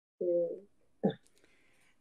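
A person's short hummed "mm", then a brief second vocal sound about a second in.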